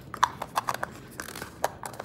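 Hard plastic salad cup and lid being handled: a series of light clicks and taps, about half a dozen in two seconds.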